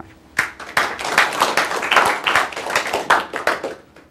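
Audience applauding, starting about half a second in and dying away near the end.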